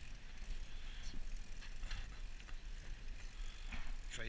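Fishing reel being wound in, its mechanism ticking faintly, over a steady low rumble.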